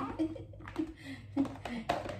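A woman chuckling and murmuring softly in short bursts, over a faint steady low hum.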